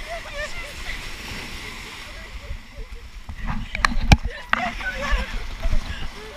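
Shallow ocean surf washing and splashing around people wading, with their voices and laughter over it. A cluster of sharp knocks and low thumps comes about four seconds in, from water and handling against the camera.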